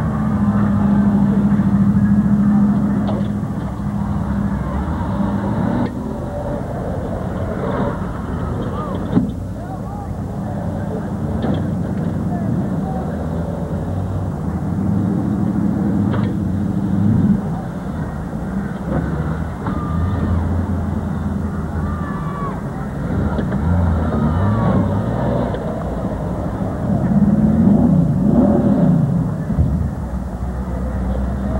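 Lifted pickup truck's engine running under load as it drives through a mud pit, revving up and down. The revs are loudest near the end. Indistinct voices sound in the background.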